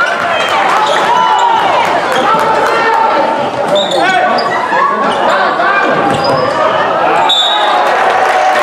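Basketball game sounds in a gym: a ball being dribbled on the hardwood court and sneakers squeaking, with voices from players and spectators throughout.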